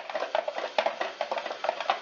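Hand-cranked spiral slicer being turned, its blade shaving a raw potato into thin chip slices: a rapid run of short clicks and scrapes, several a second.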